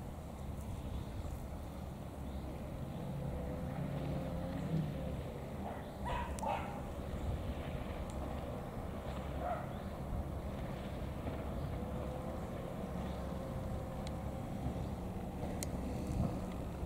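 Steady low rumble of wind and the faint drone of distant boat engines, with a dog's short whines about six seconds in and again near ten.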